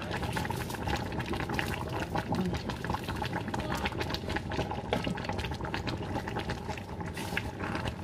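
Egusi soup simmering in a large pot on the stove, bubbling with a dense, steady crackle of small pops.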